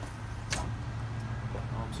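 A steady low mechanical hum, with one sharp click about half a second in.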